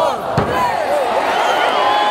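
Referee's hand slapping the wrestling ring mat once, about half a second in, during a pin count, over a crowd of voices shouting.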